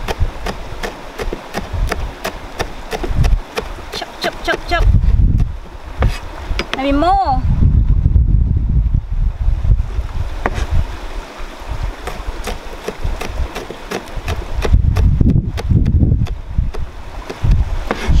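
Chef's knife chopping chilies on a plastic cutting board: a rapid run of sharp knocks, densest in the first few seconds and thinning out later.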